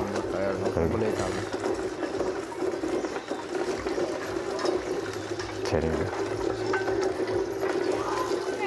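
Small motorised grain huller running with a steady mechanical hum while grain is fed through it.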